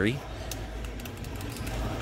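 Faint clicks and rustling from a hand pressing the try-me button and handling the tags on a plastic light-up jack-o'-lantern, over a steady low background hum. The clearest click comes about half a second in.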